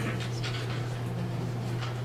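Meeting-room background: a steady low electrical hum under faint, scattered rustles and small movements from a seated audience.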